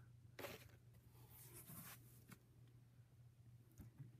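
Near silence: faint rustling handling noise, with a brief brush about half a second in, a softer rustle between about one and a half and two seconds, and a light click near the end, over a steady low hum.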